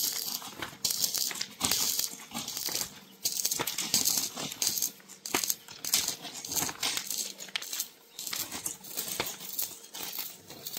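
Thick plastic greenhouse film crinkling and rustling as it is handled and pulled between two pairs of hands. It comes in repeated hissy bursts, broken by sharp little crackles.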